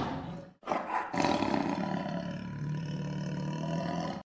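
Tiger roar sound effect: a loud opening that fades over the first half-second, a short growl just after, then one long roar lasting about three seconds.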